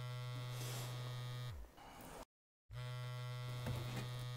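Mobile phone vibrating with an incoming call, a steady electric buzz heard twice, each buzz about two seconds long with a short pause between.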